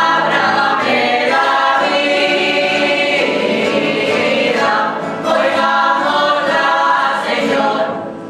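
Small choir of men and women singing a hymn at Mass, in two long phrases with a brief break about five seconds in.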